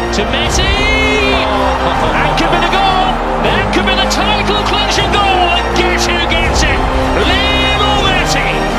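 Background music: sustained bass and chord notes under a regular drum beat, with a high lead line that swoops up and down several times.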